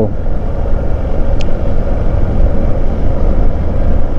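Hero Xpulse 200 single-cylinder motorcycle being ridden at a steady low speed: a loud, even, low rumble of engine and riding noise. A brief high chirp about a second and a half in.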